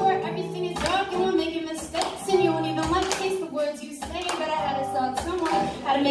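Live acoustic guitar strummed, with sharp percussive strokes about once a second, under a voice singing or rapping.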